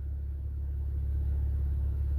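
A steady low rumble, even in level, with no other sound over it.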